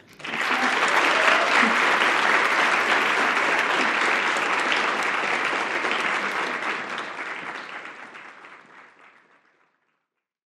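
Audience applause that starts abruptly, holds steady, then fades out over the last few seconds.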